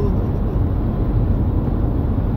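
Steady low rumble of car cabin noise, heard from inside the car.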